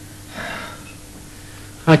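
A man gives a short, soft breath out, like a sigh, about half a second in, over a faint steady hum. His speech starts right at the end.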